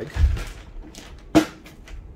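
Plastic safety bag rustling as the lithium's container is put back into it, with one sharp click about one and a half seconds in.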